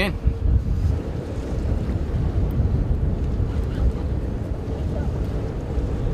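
Wind buffeting the microphone on a boat at sea: a loud, steady low rumble of wind and boat noise, with a faint steady hum that fades about a second in.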